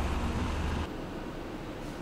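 Street ambience: a low rumble that drops away just under a second in, leaving a steady hiss of distant traffic and wind.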